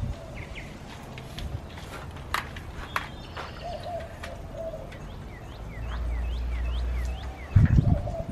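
A small bird chirping a quick run of short notes, about four a second, in the second half, with light clicks and knocks from a metal camera tripod being handled and folded. A heavy thump near the end is the loudest sound.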